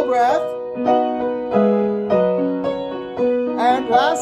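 Piano keyboard playing a vocal warm-up accompaniment: sustained chords that change about every half second, with the bass line stepping down and back up. A man's voice slides briefly at the start and again just before the end.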